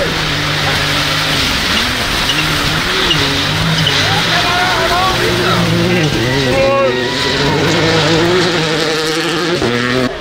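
Rally car engine revving hard through the gears, its pitch climbing and dropping repeatedly with shifts and lifts as it passes.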